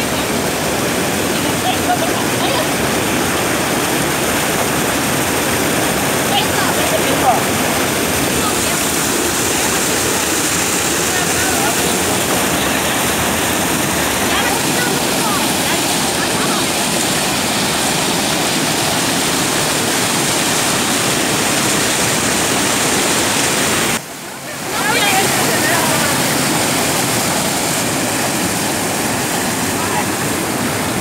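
Water pouring over a concrete check dam and churning in the pool below, a loud steady rush, with people's voices faint over it. The rush drops away for about a second near 24 seconds in.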